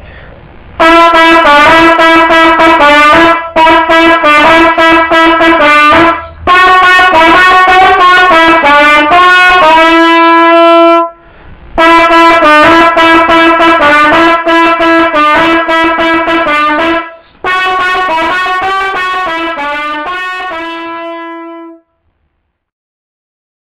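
Solo trumpet playing a worship-song chorus melody in phrases of quick, mostly repeated and stepwise notes, with short breath pauses between phrases. Two phrases end on a long held note, the second of them near the end, and the last phrase is softer than the rest.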